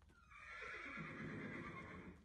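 A horse whinnying: one call of about two seconds, its lower pitch dropping partway through.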